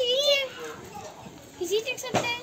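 A child's voice speaking briefly at the start, then other children's voices and chatter in the background.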